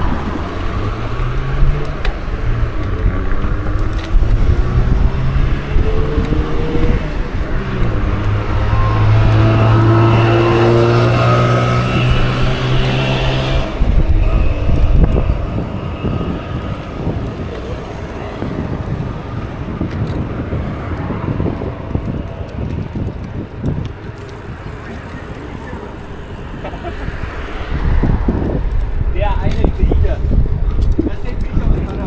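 Road traffic and wind rushing on the microphone of a moving bicycle, with a low pitched drone that rises in steps, holds steady, and breaks off abruptly about 14 seconds in.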